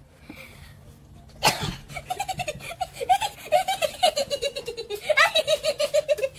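Children's laughter: a sudden loud shriek about a second and a half in, then a long run of rhythmic laughing, several 'ha' pulses a second.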